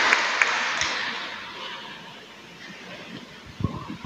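Audience applause in a church hall dying away over about two seconds. A few soft knocks follow near the end.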